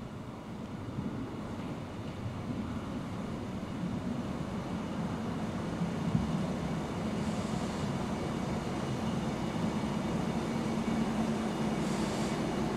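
Passenger railcar running into the station along the platform track, a low steady hum and rumble from its engine and wheels growing louder as it approaches.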